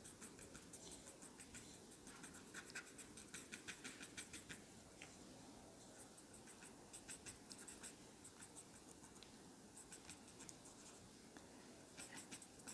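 Paper tortillon dabbed and rubbed on charcoal-covered drawing paper, a faint run of quick light ticks and scratches that comes in short bursts with brief pauses. These are small strokes picking out skin pores in the charcoal.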